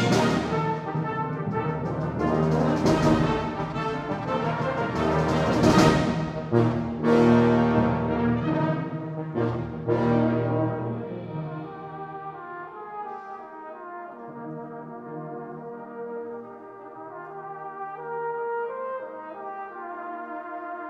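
A full brass band with percussion playing live: loud chords punctuated by several sharp drum strikes in the first half, then dropping to soft, sustained chords from about twelve seconds in.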